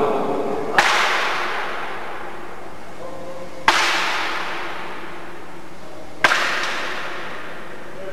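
Three sharp impacts a few seconds apart, each trailing off slowly in a large, echoing hall: thrown pieces landing on a target board on the floor in an indoor throwing game.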